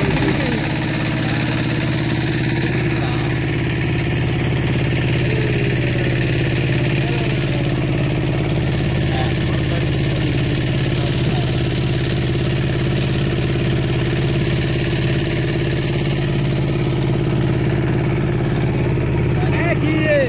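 Boat engine running steadily at an even speed, a constant low drone with no change in pitch.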